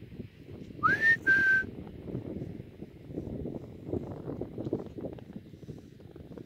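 A person whistling a short two-part call to the horses: a note that slides up and holds, then a second steady note just below it, about a second in. Wind rumbles on the microphone throughout.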